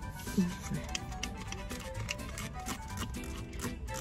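Soft background music with steady held notes, under faint clicks of a plastic spray bottle's trigger and cap being worked by hand.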